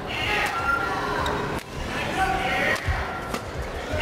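Badminton rally in an arena: a crowd shouting and cheering throughout, with a few sharp clicks of rackets striking the shuttlecock.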